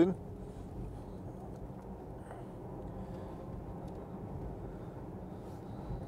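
Steady low road and tyre rumble inside the cabin of a moving Porsche Taycan 4S electric car, with no engine note.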